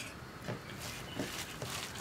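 Faint, soft squishing and rustling of a hand beginning to mix coarse ground dal batter for parippu vada in a stainless steel bowl, a few scattered soft sounds.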